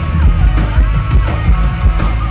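Live rock band playing loud, with a drum kit keeping a steady beat.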